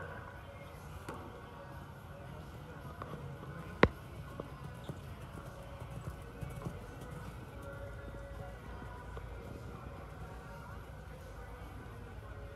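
Horse's hoofbeats as it canters on a soft dirt arena footing, under a steady low outdoor background. One sharp click about four seconds in is the loudest sound.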